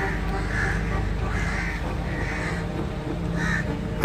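Crows cawing: about five short, harsh caws at irregular intervals over a steady low background noise.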